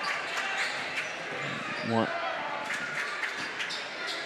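A basketball being dribbled on a hardwood gym floor, a few sharp bounces over the steady noise of a crowd in a large gymnasium.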